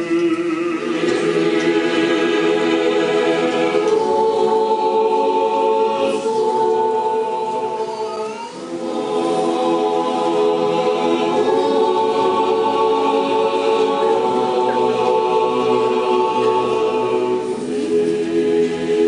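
Orthodox church choir singing liturgical chant a cappella, several voice parts holding long chords that change every few seconds, with a brief break about halfway through.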